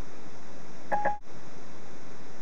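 Steady hiss of an open Bluetooth hands-free phone line through the Ford Sync car audio, with a short electronic beep about a second in and a brief dropout just after it.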